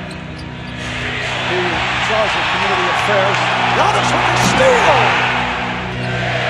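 Live basketball game sound: a ball being dribbled on a hardwood court, short sneaker squeaks, and an arena crowd whose noise swells through the middle and is loudest near the end. Background music runs underneath.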